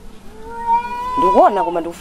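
A person's voice holding one long, high, steady note, like a drawn-out exclamation or wail, with a short spoken syllable breaking in near the end.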